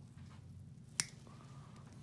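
A single sharp click about a second in, as a metal nail instrument snips through a thick, fungal toenail.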